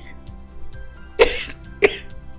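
A woman coughing twice, two short sharp coughs a little over half a second apart, over soft steady background music.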